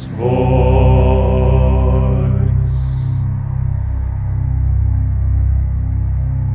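Closing held sung note of a slow hymn, ending with a soft 's' about three seconds in, over a steady low sustained drone that keeps sounding after the voice stops.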